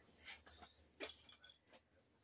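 Near silence with a few faint, light knocks and clinks, the first small one early and a slightly louder one about a second in, as a small pot is handled and set back down.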